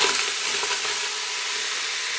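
Diced onion and green peppers sizzling steadily in the hot stainless-steel inner pot of an Instant Pot on sauté mode. They are dry-fried in a little olive brine rather than oil.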